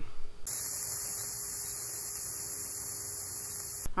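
A steady hiss with a low electrical hum. It starts abruptly about half a second in and cuts off just before the end.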